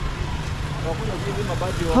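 Street ambience: a steady low rumble with faint voices of people nearby, and a man's voice breaking in at the very end.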